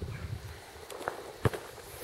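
A hiker's footsteps on a rocky trail with a few sharp taps of a walking stick struck against the ground and rocks to warn off snakes, the loudest about one and a half seconds in and at the very end.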